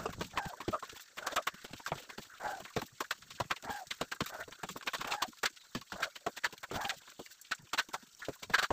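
Plastering trowel working plaster onto a wall: a quick, irregular run of clicks, taps and short scrapes.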